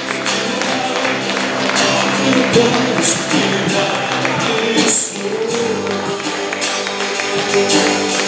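Live worship band playing a song on electric bass, keyboard and drums, with a man singing into a microphone and hands clapping along.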